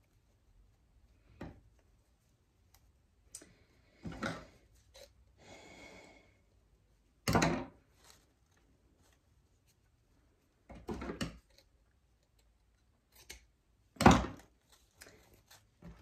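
Intermittent handling sounds of craft work on a tabletop: short clicks and knocks from scissors, ribbon and hose being handled, with a brief rustle about five seconds in. The loudest knocks come about seven and fourteen seconds in.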